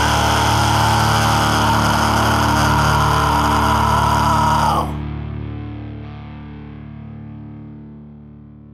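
The final held chord of a rock song, with distorted electric guitar. About five seconds in, most of the band cuts off at once, leaving low notes ringing and fading away.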